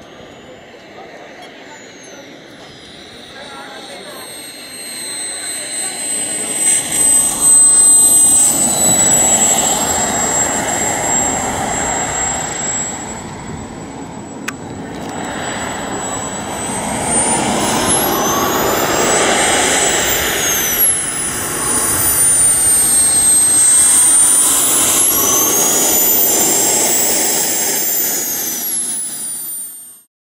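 Radio-control model jet's small gas turbine engine whining and rushing as the jet makes low passes. The noise swells a few seconds in and again over the last third, and the high whine swings up and then down in pitch as the jet goes by.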